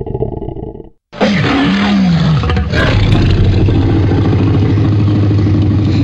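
Dramatic music stops about a second in. A loud monster roar sound effect follows, wavering and falling in pitch at first, then settling into a long, low, held growl.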